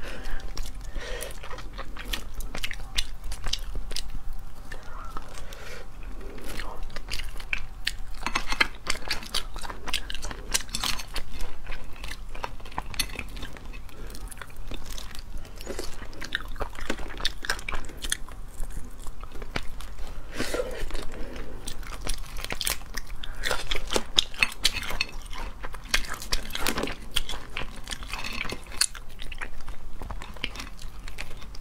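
Close-miked cracking and crunching of cooked lobster shells being pulled apart by hand, with biting and chewing of the meat, in irregular crackles.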